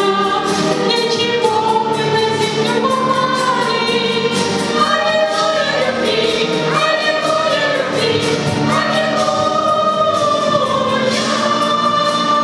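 A mixed choir of children and adults singing together, with a woman's voice on a handheld microphone leading.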